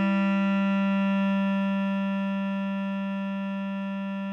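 A single long bass clarinet note, written A4 (sounding the G below middle C), held steady and slowly fading.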